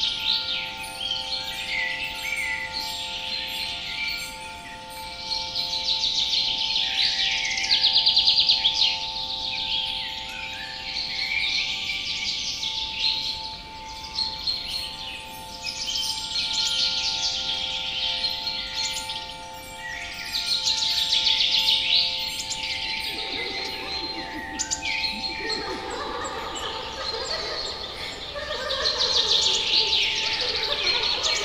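Forest birds singing and chirping densely over a steady, held hum of several tones that fades out about 25 seconds in. Near the end, a babble of chattering voices rises in the mid-range.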